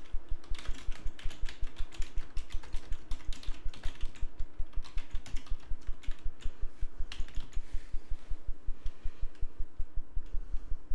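Typing on a computer keyboard: quick, irregular key clicks that thin out near the end. Beneath them runs an even, fast low pulsing, several beats a second.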